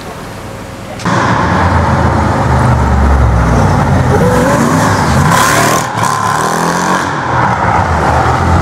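A loud car engine running and revving, cutting in abruptly about a second in, after quieter street sound.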